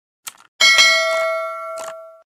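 Click and notification-bell sound effects of a subscribe-button animation: a short click, then a bell-like ding with several ringing tones that slowly fades, and another short click near the end.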